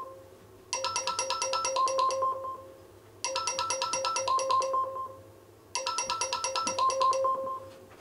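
Jibo social robot's alarm tone: a short tune of quick ringing notes, played three times about two and a half seconds apart.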